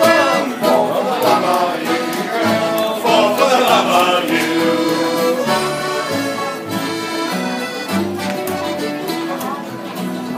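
Live acoustic band playing a traditional folk tune: an accordion carries the melody over plucked upright bass notes and strummed acoustic guitar.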